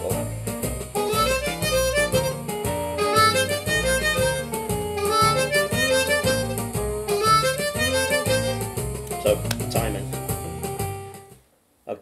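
Blues harp (diatonic harmonica) played over a blues jam track with guitar, bass and a steady beat; the music fades out near the end.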